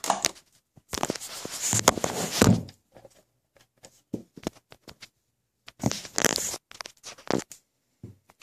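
Handling noise: rustling and scraping, most likely hands moving the plastic hull of an RC boat, in two bursts of a second or two each with a few sharp clicks.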